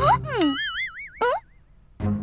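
Cartoon sound effects: a quick falling pitch glide, then a wobbling "boing"-like tone that fades out over about a second, cut across by a short rising glide.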